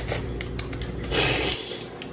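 Close-up eating sounds: clicks and mouth noises while chewing food, with a short scraping rush about a second in.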